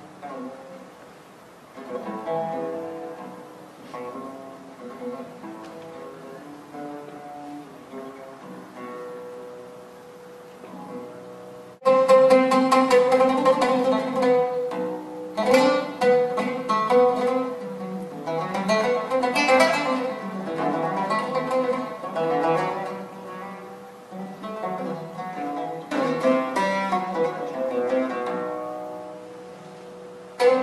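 Solo oud improvisation, its strings plucked. The notes come soft and sparse at first, then about twelve seconds in the playing turns suddenly louder into a dense run of rapid notes.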